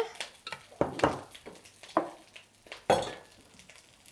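Kitchenware handled on a counter: a handful of light knocks and clinks, about a second apart, as food is put into a small baking dish.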